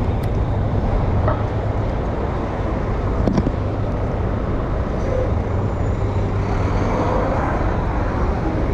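Steady city street traffic noise, a low rumble of passing vehicles, with a single sharp click about three and a half seconds in.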